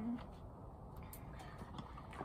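A pause in speech: faint steady background noise with a couple of light clicks, after a spoken word trails off at the very start.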